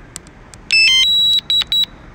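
DJI Mavic Mini return-to-home alert sounding after RTH is triggered: a quick chirp of stepped tones, then a high beep, one longer and then short quick repeats, the beep everyone finds awfully annoying.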